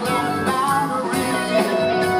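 Live progressive rock band playing, with electric guitar and keyboards.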